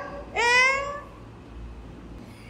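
Domestic cat meowing once, a single call about half a second long that rises slightly in pitch.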